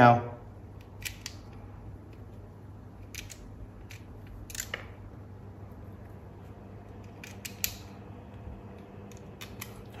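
Scattered small clicks and ticks of tiny screws and the plastic housing of a Braun Series 5 electric shaver being handled while it is screwed back together, over a faint steady low hum.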